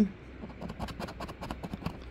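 A coin scratching the coating off a scratch-off lottery ticket: a quick, irregular run of short scraping strokes starting about half a second in.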